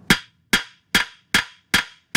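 Five evenly spaced metal-on-metal hammer strikes, about 0.4 s apart and each with a short ring, on vise grips clamped to a sheared, salt-corroded mount bolt in an outboard's lower unit. The blows are meant to shock the seized bolt stub loose.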